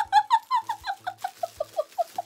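A woman's high-pitched giggle: a rapid run of short squeaky notes, about eight a second, falling steadily in pitch.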